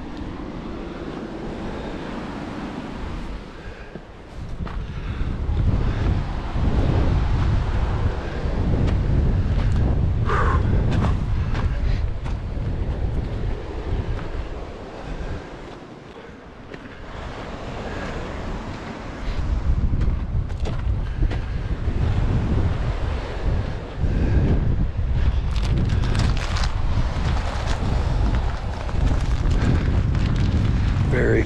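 Gusty wind buffeting the camera's microphone: a loud low rumble that swells and drops, easing off briefly about four seconds in and again around the middle.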